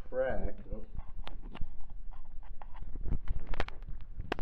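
Irregular light clicks and knocks as a hand handles the plastic frame and metal parts of an opened sewing machine, with a brief murmured voice in the first second.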